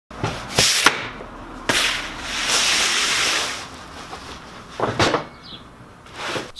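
A vinyl blackout roller blind being handled and spread out as a backdrop: several sharp snaps and clacks, and a long rustling swish of the sheet in the middle.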